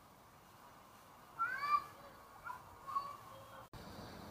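Low outdoor background with short, arching animal calls: one longer call a little over a second in, then two brief ones about a second later.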